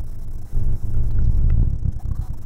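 Loud low rumble inside a moving car, with a short dip about half a second in.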